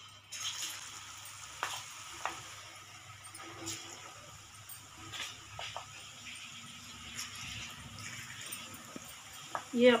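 Gram-flour-coated peanuts dropped into hot oil in a kadhai, deep-frying over a high flame with a steady sizzle and scattered pops.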